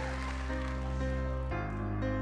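Instrumental backing track opening a pop ballad: held chords over a low bass, the chords shifting about every half second and the bass note changing about a second and a half in.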